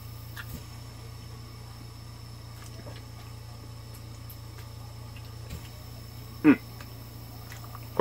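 Quiet chewing with a few faint mouth clicks over a steady low hum, and one short falling vocal sound, like an appreciative 'mm', about six and a half seconds in.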